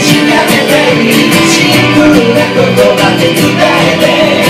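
Acoustic guitar strummed in a steady rhythm while a man sings a song live into a microphone.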